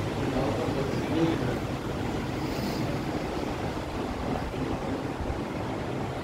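Steady background hum with an indistinct murmur of voices.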